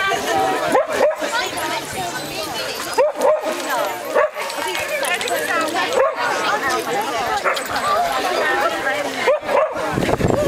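Several Hungarian vizslas barking and yipping, with sharp barks every second or two, over steady chatter from the people around them.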